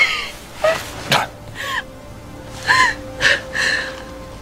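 A woman sobbing in grief: about five short, high, breaking cries, with a sharp gasp about a second in, over soft sustained notes of film music.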